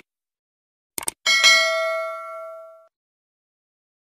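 Subscribe-button animation sound effect: a quick double click about a second in, then a bright notification-bell ding that rings and fades out over about a second and a half.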